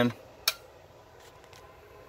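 A single sharp click about half a second in as a 250 W Bird Thruline wattmeter element (slug) is seated in the meter's socket. Faint room noise follows.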